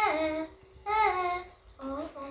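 A young girl singing unaccompanied: held notes in short phrases, with brief pauses for breath between them and a downward slide at the end of a phrase.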